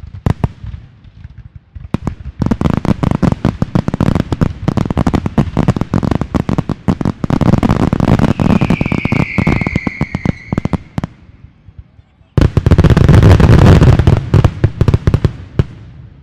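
Fireworks going off: a rapid run of sharp bangs and crackles, with a falling whistle about halfway through. After a short lull, a louder, denser volley follows near the end.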